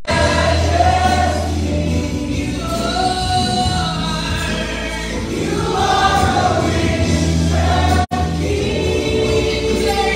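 Gospel worship song sung by a small group of singers with band accompaniment, held low bass notes under the sung melody. The sound cuts out for an instant about eight seconds in.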